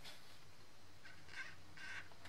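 Faint, short strokes of an alcohol marker's nib on glossy cardstock, about three in the second half, as a cabin is coloured in brown.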